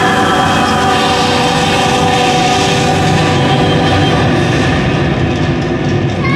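Dark-ride special effect: a loud, steady rumble and hiss as a blast of stage smoke billows across the set, under several sustained held tones.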